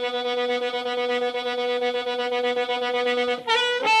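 Blues record intro: a reed instrument holds one long note for about three seconds, then plays a few quick changing notes. A singing voice enters right at the end.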